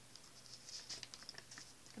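Pages of a small paper notebook being turned by hand: a faint, scattered rustling of paper.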